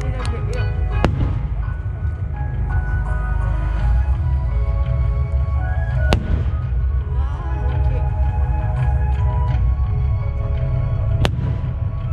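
Aerial firework shells bursting overhead: three sharp bangs about five seconds apart, over music playing and a constant low rumble.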